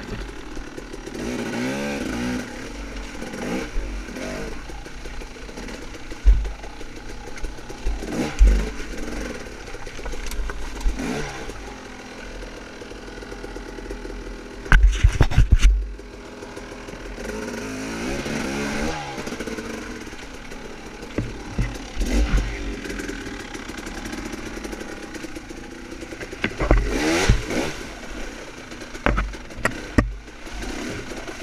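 Dirt bike engine revving up and falling back in repeated bursts of throttle at low speed over rocks, with scattered clattering knocks and a loud run of heavy thumps about halfway through.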